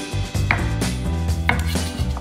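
Red radish being cut on a cutting board: two sharp cutting strokes about a second apart, over background music.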